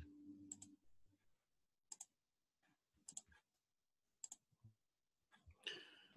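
A few faint computer mouse clicks, mostly in quick pairs, spaced about a second apart, in otherwise near silence.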